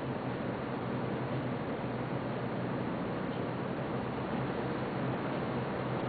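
Steady hiss with a low hum underneath and no distinct sounds: room tone.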